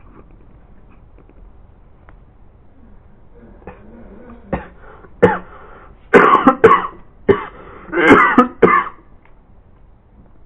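A run of about seven harsh, cough-like bursts over roughly four seconds, starting about halfway through; the loudest come near the end.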